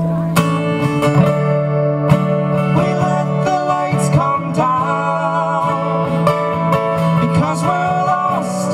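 Two acoustic guitars playing an instrumental passage of a folk song live, with a melody line that slides between notes over the chords.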